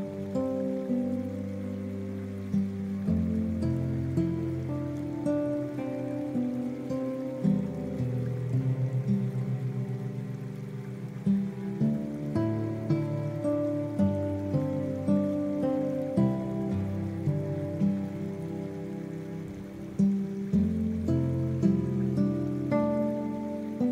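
Slow, gentle guitar music: plucked notes and chords that ring and fade over a soft bass line, with a faint rain sound mixed in underneath.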